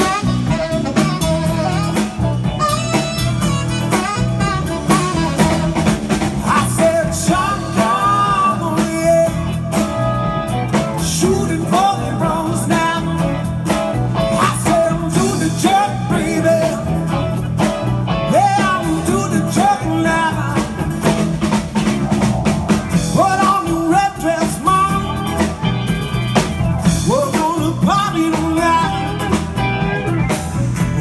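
Live band playing a blues-rock number, with electric guitar and keyboard over a steady beat and bending lead notes.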